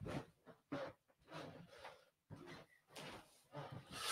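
Near silence in a small room, broken by about six faint, short knocks and rustles at irregular intervals, the sound of someone moving about while switching off the room lights.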